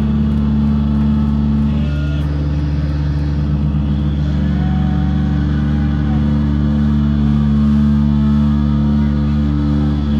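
A live band's amplifiers sustaining a loud, steady, low distorted drone of held guitar and bass tones, with no drumbeat. Faint short feedback whistles wander above it.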